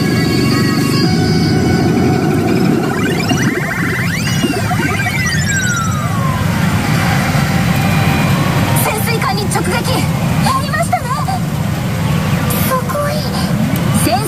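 Pachinko machine game audio: electronic music and sound effects over a dense din, with sweeping pitch effects and one long falling glide a few seconds in.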